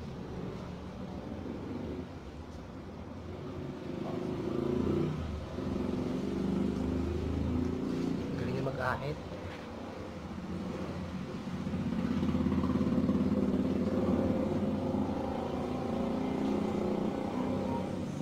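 A motor vehicle engine running, with a low steady rumble that grows louder about four seconds in and again around twelve seconds.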